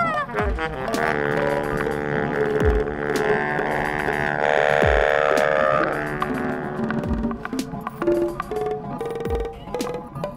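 Live electronic improvised music: a long droning tone with many overtones swells from about a second in and fades near six seconds, over deep sub-bass kicks that fall in pitch, about one every two seconds, with sparse clicks and guitar notes.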